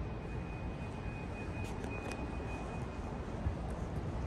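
Steady low background rumble of an airport terminal hall, with a faint high-pitched steady whine that stops about three seconds in.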